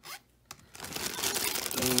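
Plastic zip-top bag crinkling as hands dig through the loose jewelry inside it, with small clicks of the pieces knocking together, starting about half a second in.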